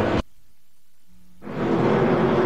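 Race-broadcast track audio of stock-car engines cuts off abruptly, leaving about a second of low hush. A low steady hum then comes in, and the engine and pit-road noise fades back up as the broadcast returns from a break.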